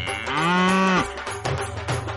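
A cow mooing once, a single call of under a second whose pitch rises and then holds. It plays over background music with a steady beat.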